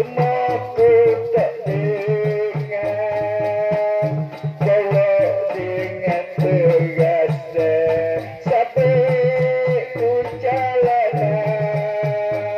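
Shadow-puppet (wayang kulit) ensemble music: a wavering, bending melody over a repeating low drum pattern, with sharp metallic clicks of small cymbals or rattles throughout.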